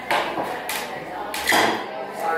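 Three sharp knocks and clicks, the last about one and a half seconds in the loudest, from a small floor lamp being handled while its colour is switched.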